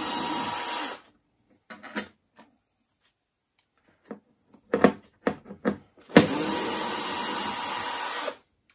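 Cordless electric screwdriver running in short spells to back out small screws. One run stops about a second in, a few light clicks and taps follow, and a second run of about two seconds starts around six seconds in.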